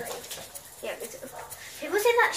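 A pet dog whimpering faintly, mixed with quiet children's voices.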